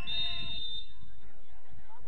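Footballers shouting calls to each other on the pitch: a drawn-out, high-pitched call right at the start that fades within the first second, then only faint distant calls.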